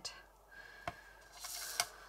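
Faint clicks of a diamond-painting pen tip tapping in a plastic drill tray as it picks up resin drills, with a brief rustle about one and a half seconds in.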